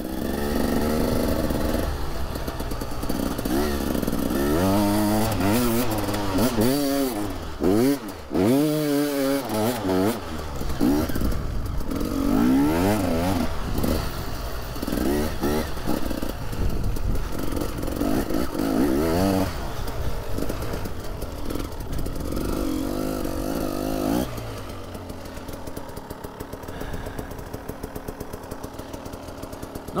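KTM EXC 300 two-stroke single-cylinder enduro engine being ridden, its pitch rising and falling again and again with the throttle, cut off briefly about eight seconds in. For the last few seconds it settles into quieter, steadier running.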